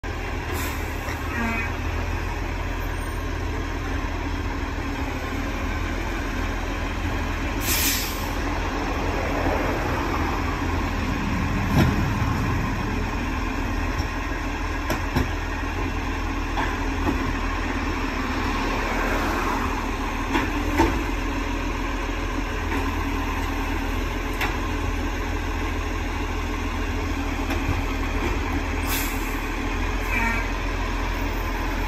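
Diesel engine of an Iveco side-loader garbage truck running steadily at idle. Brief hisses of air come about eight seconds in and again near the end, and a few sharp knocks come in between.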